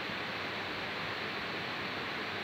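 Steady hiss of a recording's background noise, even and unchanging, with no other sound on top.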